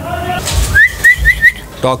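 Moluccan cockatoo giving four quick, rising whistled chirps in a row, about a second in.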